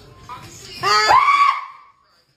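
A loud, high-pitched human scream, starting a little before the middle, rising in pitch and then holding before it trails off near the end.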